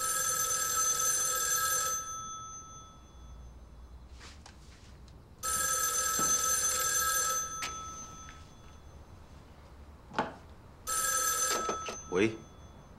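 Old-style telephone bell ringing three times, each ring about two seconds long with a pause of about three seconds between. The third ring is shorter.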